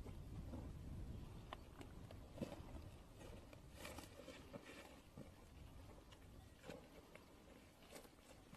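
Faint footsteps crunching over stony, scrubby ground, with scattered scuffs and rustles over a low rumble.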